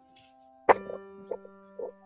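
Music: a single piano or keyboard note struck sharply about two-thirds of a second in and held, ringing on steadily, after a fainter held note at the start.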